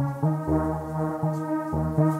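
A synthesizer melody of held notes with a bass line underneath, played back from an Akai MPC X. The bass notes change several times a second.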